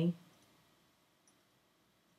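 A spoken word trails off just after the start, then near silence with one faint click a little past the middle.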